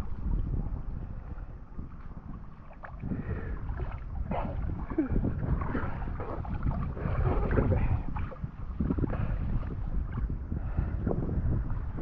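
Water sloshing and lapping around people wading chest-deep in a fish pen, with wind buffeting the microphone.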